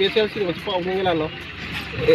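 A man speaking to press microphones, in pitched phrases that break off about a second and a half in. A steady low rumble runs underneath.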